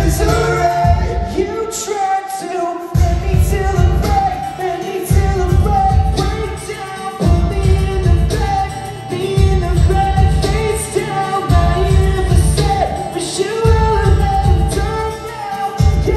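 Live acoustic band performance: a male lead vocalist singing over two strummed acoustic guitars and a cajón beat. The low end drops out briefly a couple of times.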